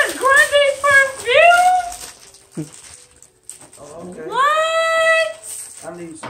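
High-pitched wordless exclamations of delight from a person: a few short rising squeals in the first two seconds, then one long 'ooh' that rises and is held for about a second.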